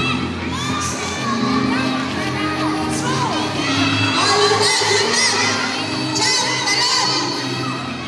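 A crowd of children shouting and cheering, many voices overlapping, with music playing underneath.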